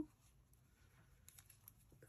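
Near silence with a few faint light ticks from a metal crochet hook and yarn being handled as the yarn is pulled through a loop.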